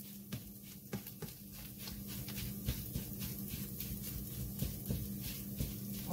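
A spoon pressing and scraping corned beef hash against a nonstick frying pan, squishing it soft: a run of soft, irregular taps and scrapes over a steady low hum.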